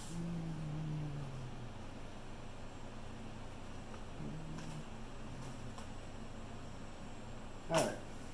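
Quiet workshop room tone with a steady low hum. A man hums a low wordless note for about a second and a half at the start and briefly again about four seconds in, and a single sharp knock sounds near the end.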